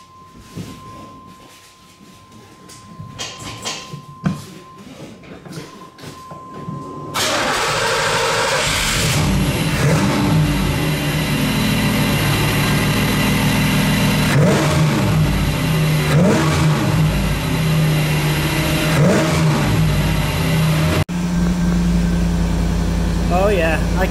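A 1990 Pontiac Firebird's throttle-body-injected V8 starts about seven seconds in and then runs steadily, heard from under the hood beside the air cleaner, which now breathes through the opened hood scoop. A few short rises and falls in engine pitch are heard while it runs.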